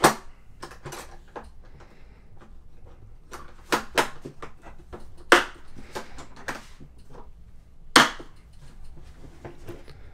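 Sharp plastic-and-metal clicks and clacks as the metal latches of a DeWalt plastic tool case are snapped and the case is handled: a dozen or so separate snaps, the loudest right at the start, about five seconds in and about eight seconds in.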